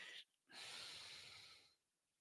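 A man's faint breath out close to the microphone, an airy hiss lasting about a second that starts about half a second in.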